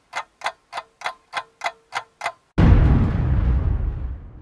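Clock-like ticking, about three ticks a second, for a little over two seconds, then a sudden loud crash that fades away over about a second and a half.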